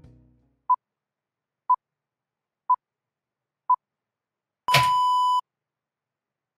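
Countdown timer beeps: four short beeps of the same pitch, one a second, then a longer beep of under a second that opens with a burst of noise, marking zero.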